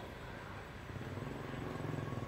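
A motorbike engine running at a distance, a low hum that grows slowly louder as the bike rides closer.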